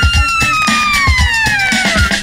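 Recorded music with a drum beat played from a vinyl LP on a Technics SL-BD22 turntable. A long held note slowly slides down in pitch and fades out near the end.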